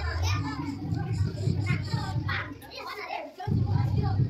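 Many children talking and calling out at once over a low rumble. The sound drops out for a moment about three and a half seconds in, then resumes.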